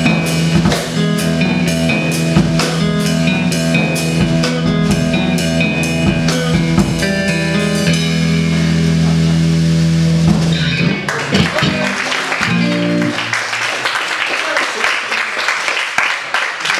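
Live rock band of electric guitar and drum kit playing: rapid, steady cymbal strikes over a held guitar chord. The drums stop about eight seconds in and the chord rings on until about eleven or twelve seconds, when it gives way to audience noise as the song ends.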